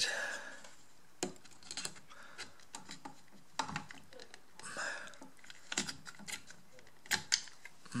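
Irregular small clicks and taps of hard plastic parts as a vacuum motor's black plastic end housing is handled and seated by hand over the armature and brushes.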